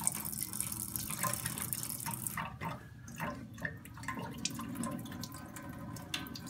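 Thin stream of tap water running into a stainless steel sink, with a few light knocks about halfway through.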